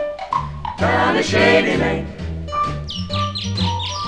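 Mono 1950s swing-choir record: a walking bass and rhythm section under a blend of voices, with a quick run of short high chirping notes near the end.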